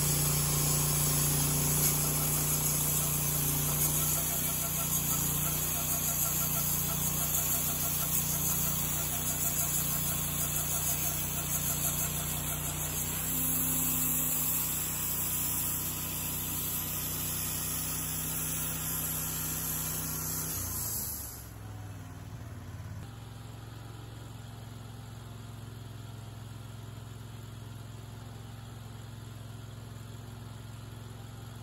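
Wood-Mizer LT30 Hydraulic band sawmill running, its band blade cutting through a red oak cant with a steady high hiss over the engine. A little over 20 seconds in, the cutting sound stops abruptly, leaving the engine idling quietly.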